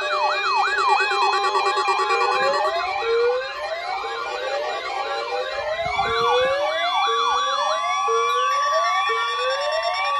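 Several NOAA weather radios sounding their alert alarms together for a Required Weekly Test. Their siren-like tones overlap in rising, falling and warbling sweeps that repeat several times a second, and a steady high tone joins them about six seconds in.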